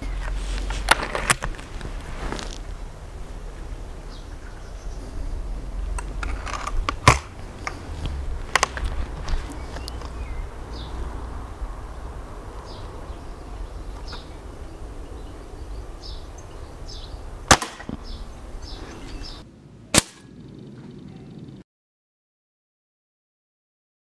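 Break-barrel spring-piston air rifle (Remington Express) handled with several sharp clicks of cocking and loading, then fired once with a sharp crack about 17 s in. Near the end the pellet strikes the paper target with a single sharp knock. A low wind rumble on the microphone runs under the first part.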